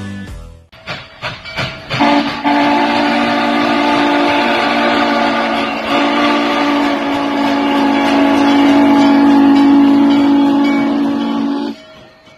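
Steam locomotive whistle blowing one long, steady chord of several tones for almost ten seconds, then cutting off just before the end. A few short, sharp sounds come before it.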